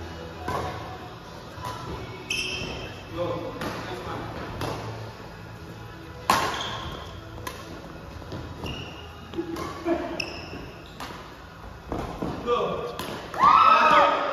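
Badminton rackets striking a shuttlecock in a doubles rally, a string of sharp hits, the loudest about six seconds in. Short high squeaks between the hits, with voices near the end.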